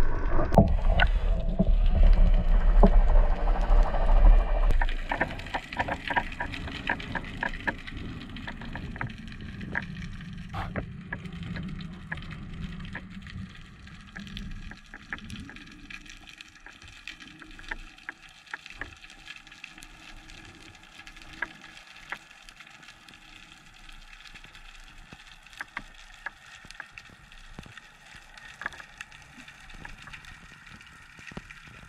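Underwater noise picked up through an action camera's waterproof housing. A loud low rumble of water movement for the first five seconds or so, then quieter water noise with scattered faint clicks and crackles.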